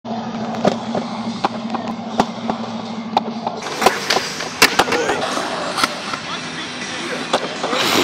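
Skateboard wheels rolling and carving across a concrete bowl, with many sharp clacks and knocks throughout. A low steady hum runs under the first three seconds or so.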